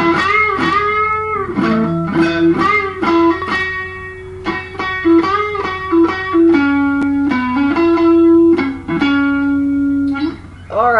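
Telecaster-style electric guitar playing a country lead lick of single notes: string bends that rise and fall in the first few seconds, then steadier held notes and short plucks.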